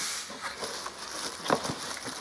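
Cardboard box flaps being pushed open and rubbed by hand: a soft rustling scrape, with a short click about a second and a half in.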